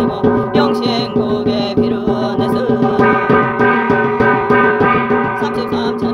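Brass gong beaten in a steady rhythm, about two strokes a second, its ringing tone carrying between strokes, under a woman's ritual chanting.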